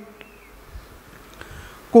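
A pause in a man's amplified speech: faint background room noise, with a brief faint falling whistle-like tone shortly after the start.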